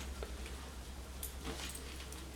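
A few faint, brief taps from a yellow Labrador puppy's front paw on a hardwood floor, over a low steady room hum.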